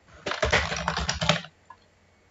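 Computer keyboard typing: a quick run of keystrokes that stops after about a second and a half.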